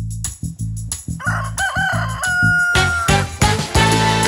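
A rooster crowing once, starting just over a second in: a wavering call that then holds one high note. It sounds over music with a steady beat.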